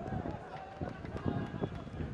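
Voices calling and shouting across an open football pitch, with scattered short knocks.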